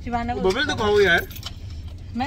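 A voice inside a car cabin over the car's low, steady running hum. In the second half comes a quick run of light clicks and jingles.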